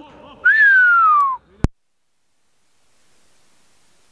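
A single whistled note, about a second long, sliding steadily down in pitch. A sharp click follows, and the sound then drops out to a faint hiss.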